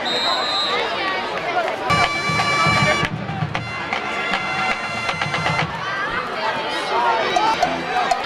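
Crowd chatter in football stands, with a short high whistle blast at the start, then brass or wind instruments holding sustained notes twice, for about a second and then about two seconds.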